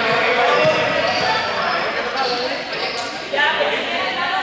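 Many players' voices calling and chattering at once in a large sports hall, with balls bouncing on the court floor.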